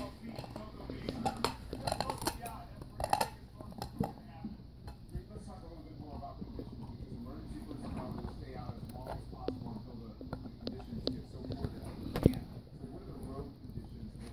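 German Shepherd puppies gnawing on chew bones: irregular clicks, scrapes and crunches of teeth on bone, with one sharper knock near the end.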